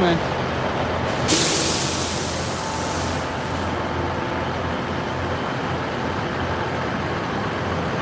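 A Northern multiple-unit train with a low steady hum. About a second in, a sudden loud hiss of released compressed air lasts around two seconds, typical of a train's air brakes.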